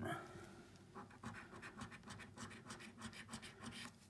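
A coin scraping the silver latex off a National Lottery scratchcard in many quick, short, faint strokes.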